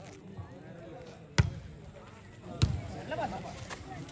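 Volleyball struck by hand: a sharp smack about a second and a half in, a second hit about a second later, and a lighter touch near the end, as the ball is served and played.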